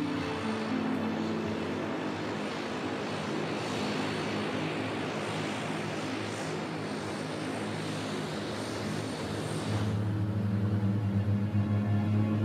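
Engines and propellers of a de Havilland Canada Twin Otter, a twin turboprop, running on the ground with a steady rushing noise. Music comes in about ten seconds in and rises over it.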